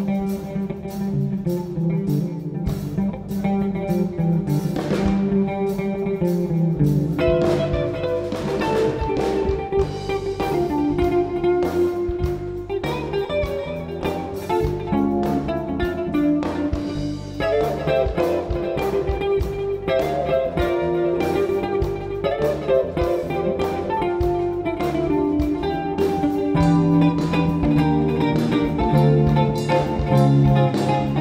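Live jazz band playing: a hollow-body electric guitar picks melodic lines over electric bass guitar and drums.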